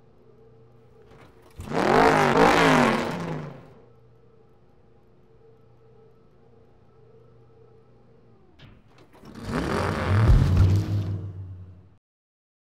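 A race car engine revving twice, each rev rising and falling in pitch: once about a second and a half in, and again about nine seconds in. Between the revs it idles quietly and steadily.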